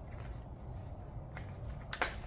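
Handling noise from a detached stroller wheel and the plastic-and-metal frame of the folded ABC Design Viper 4: faint rustles, then a few sharp clicks and taps in the second half. A steady low rumble runs underneath.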